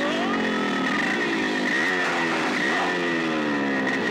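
Motorcycle engine revved over and over: its pitch jumps up sharply and sinks back slowly, about four times. A steady high tone runs underneath.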